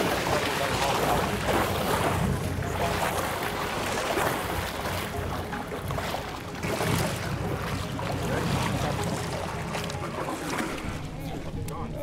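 Sportfishing boat's engine running at the stern, with water splashing and rushing around the hull and wind on the microphone, while a sailfish is held alongside for release.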